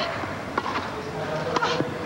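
Tennis ball being struck and bouncing during a rally on a grass court: a few short sharp pocks over the steady hum of a stadium crowd. A brief voice-like sound comes about a second and a half in.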